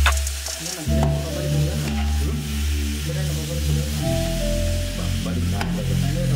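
Chicken pieces frying in masala in an aluminium pot, sizzling as a metal spoon stirs and scrapes through them, with a couple of light clicks of the spoon. Background music with low bass notes plays underneath.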